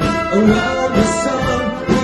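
Wind band playing an instrumental passage of a pop song, with brass to the fore.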